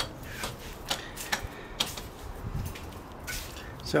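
A few light, irregular clicks and taps from close handling of the camera rig, over a faint background hiss.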